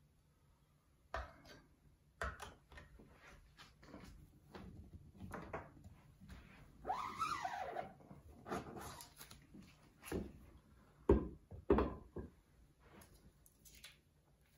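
Quiet screen-printing handling: a squeegee working ink across the mesh screen onto the fabric, with scattered light taps and knocks, a longer scraping stroke about seven seconds in, and two sharper knocks a little past eleven seconds.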